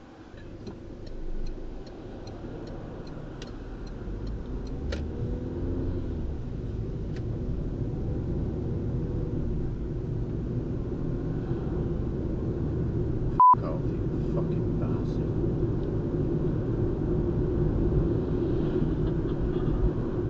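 Low rumble of a car running, growing steadily louder, with one short, loud high beep about two-thirds of the way through.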